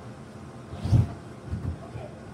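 A child landing on the floor of an inflatable bounce house: a dull thump about a second in and a smaller second thump just after, over the steady hum of the bounce house's blower.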